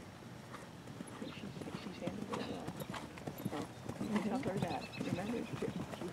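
A horse's hooves beating on a sand arena: a run of steady hoofbeats, with low voices talking over them from about four seconds in.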